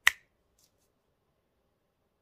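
A single sharp finger snap.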